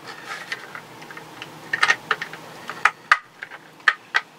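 Hard plastic suitcase wheel bracket and small metal parts being handled: irregular light clicks and clacks, with a few sharper ones in the second half.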